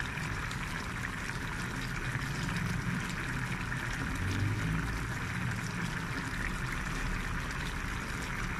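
Coconut-milk vegetable stew boiling in a pan with a steady bubbling, cooked down until the coconut milk starts to release its oil.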